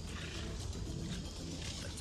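Several lionesses growling as they pull at and feed on a large kill together.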